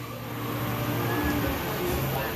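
Live band in a quiet passage with the drums stopped: a low note held under a hiss of room noise.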